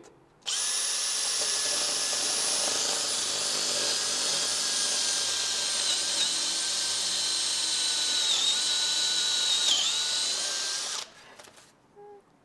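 Cordless Makita drill running steadily as its bit bores through a puck of press-compacted wood, a high whine that sags in pitch briefly three times as the bit bites. It stops about a second before the end.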